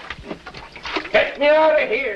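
A man's voice calling out in one long, drawn-out cry in the second half, after some short indistinct sounds.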